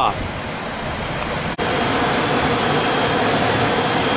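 Steady rushing of water at a dissolved air flotation treatment basin, with a faint steady hum under it. An abrupt break about a second and a half in, after which the rushing comes back louder.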